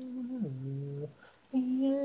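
Isolated a cappella vocals with no instruments: a held sung note that steps down in pitch about half a second in, a short break in the middle, then a louder held note near the end.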